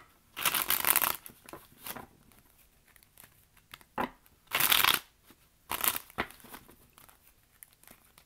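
Tarot cards being shuffled by hand in several short bursts with pauses between, the longest about half a second in, and a sharp click of a card near the middle.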